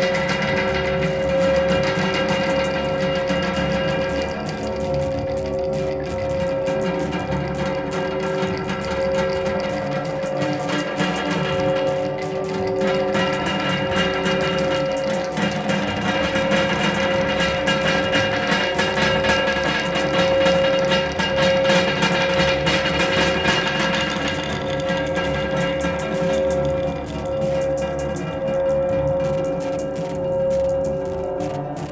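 Experimental noise improvisation: tin cans and a metal gas canister worked with sticks in front of a microphone, run through electronics. Steady droning tones stop and start over a continuous scratchy, rattling texture.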